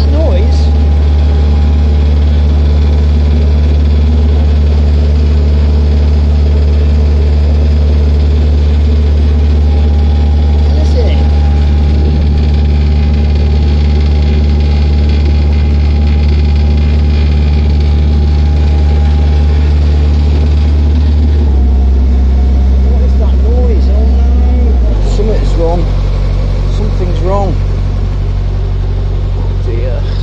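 Narrowboat's inboard diesel engine running steadily under way, a loud, deep, even drone. A little over 20 seconds in its note drops slightly, and a few seconds later it eases off and gets a little quieter.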